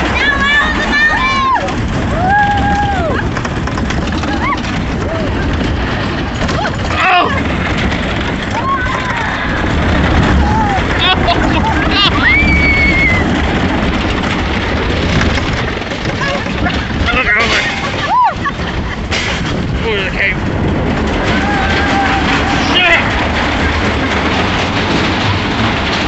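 Roller coaster car running along a wooden track, a steady loud rumble and rattle. Riders shout and whoop at intervals over it.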